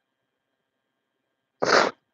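A crying woman lets out one short, sharp breath noise through the nose and mouth about one and a half seconds in, after near silence.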